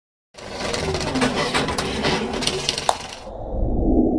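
Logo-intro sound effect: a dense crackling, glittering noise full of sharp clicks for about three seconds, which cuts off and gives way to a low rumble that swells near the end.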